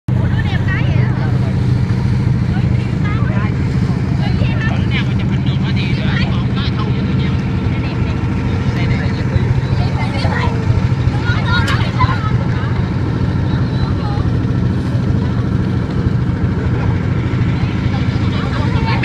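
A small tour boat's engine running steadily under way, a loud even low hum, with people's voices faintly over it at times.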